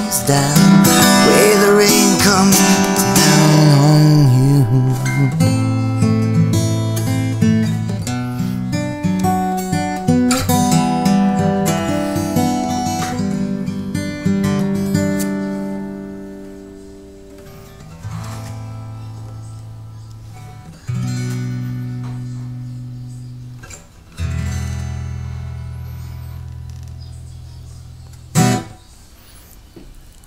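Solo acoustic guitar playing a song's closing bars, thinning out to single strummed chords about 18, 21 and 24 seconds in, each left to ring and fade. A sharp click comes near the end.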